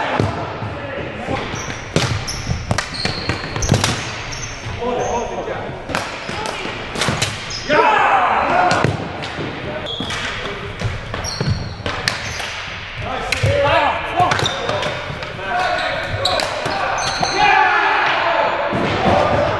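Ball hockey on a hardwood gym floor: sticks clacking against the floor and ball, with many sharp knocks throughout. There are short high squeaks, players shouting and calling out a few times, and the whole echoes in the large hall.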